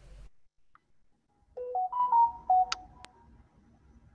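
A short electronic chime: a quick run of clear beeps stepping up and down in pitch for about a second and a half, with a sharp click near the end.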